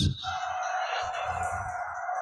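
A pause in speech filled by the room's background noise: an even hiss with one faint steady mid-pitched tone running through it.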